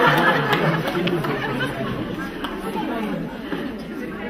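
Chatter of several voices talking at once in a large hall, loudest at first and growing quieter over the seconds.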